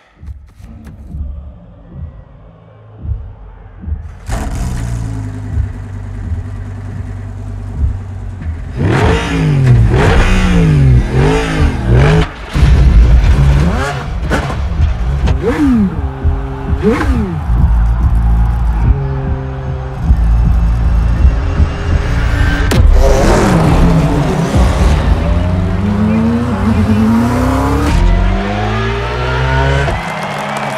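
Racing car engines idling and being revved on the starting grid, the pitch rising and falling in repeated blips. Several engines rev together near the end. The sound builds up from quiet over the first few seconds.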